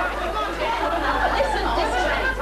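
Several voices talking over one another, with a steady low hum underneath.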